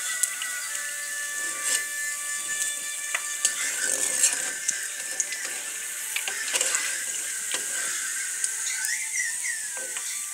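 Fritters frying in hot oil: a steady sizzle with scattered crackles.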